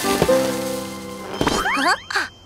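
Cartoon music with a held chord that fades away, then a rising sliding sound effect near the end as a balloon pops into shape.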